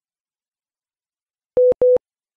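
Two short, loud beeps of one steady mid-pitched tone, close together, about one and a half seconds in after dead silence. They are a broadcast cue tone marking the break between segments, a signal for relaying stations.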